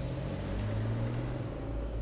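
A car driving: a low, steady engine rumble with a faint tone that rises slowly over the first second or so.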